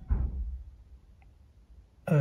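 Brief low handling bump as the aluminium brake caliper is turned in the hand, followed about a second later by a single faint click.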